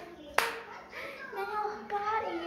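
A single sharp hand clap about half a second in, followed by a child's voice singing.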